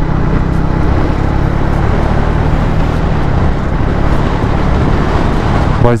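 Triumph Speed 400's single-cylinder engine running at a steady cruise while the motorcycle is ridden, with heavy wind rush over the microphone. The engine note holds even, with no revving or gear changes.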